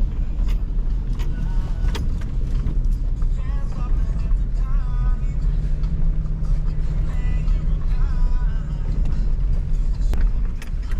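Truck driving slowly over a rough dirt road, heard from inside the cab: a steady engine and road rumble with frequent knocks and rattles as it goes over bumps.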